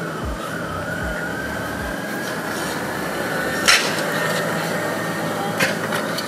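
A faint wavering, siren-like tone drifting slowly upward over a steady rushing noise. There are a few low thumps in the first two seconds and a sharp click about halfway through.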